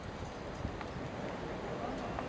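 Hoofbeats of a Belgian Warmblood horse cantering on grass turf, a few dull thuds, with indistinct voices in the background.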